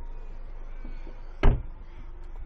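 A single solid thump of a car door being shut about one and a half seconds in: the door of a 2015 Renault Megane coupé-cabriolet.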